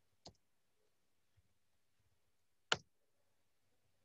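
Two sharp clicks over a quiet room: a light one just after the start and a much louder one about two and a half seconds later.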